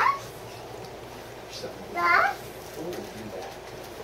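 A young child's voice: two short, high-pitched wordless calls about two seconds apart, each rising in pitch.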